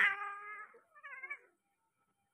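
Turkish Angora cat yowling during mating: one loud call of about two-thirds of a second, then a shorter, wavering second call.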